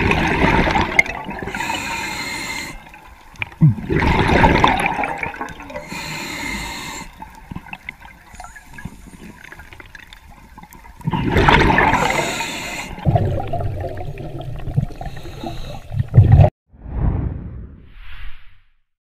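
A diver breathing underwater through a scuba regulator: three rushes of exhaled bubbles, each followed by a high hiss of air on the inhale. The sound cuts off abruptly near the end.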